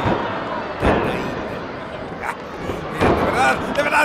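A single sharp slam about a second in, a wrestling hit landing on the ring, over the steady noise of an arena crowd.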